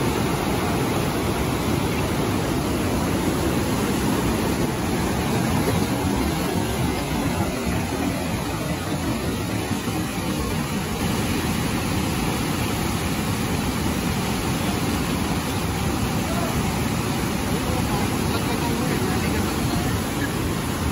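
Niagara River whitewater rapids rushing past at close range, a steady, even wash of water noise that holds throughout with no let-up.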